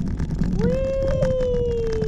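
A person's voice holding one long vocal note for about two seconds, starting about half a second in and sliding slowly down in pitch, over a steady rush of wind on the microphone.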